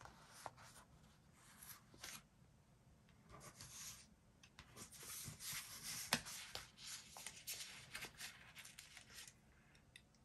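Faint, scattered rustles and light taps of paper and sticker sheets being handled on a desk, with a sharper click about six seconds in.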